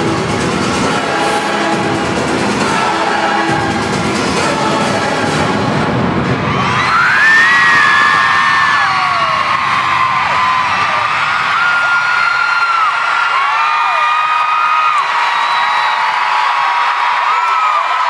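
Live pop music playing loud in an arena. About seven seconds in, the music drops away and a crowd of fans keeps up high-pitched screaming and cheering, many long screams overlapping.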